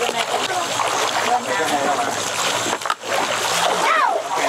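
A shoal of tinfoil barbs (cá he) splashing and churning at the surface of a river as they snatch thrown feed, with people's voices over the splashing.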